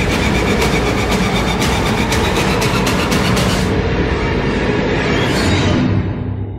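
Loud horror-film sound design: a dense rattling, rumbling noise with rapid clicks, over an underlying score. The high hiss drops away about four seconds in, and a short rising-then-falling whoosh comes near the end.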